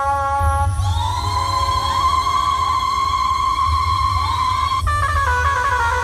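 Dhumal band music played loud through a sound system: a lead melody slides up into a long held note about a second in, then breaks into a quick run of notes near the end, over a heavy pulsing bass.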